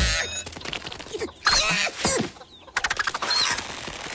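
Cartoon sound effects: short high chick peeps, sliding whistles that fall in pitch, and a fast clicking rattle about three seconds in.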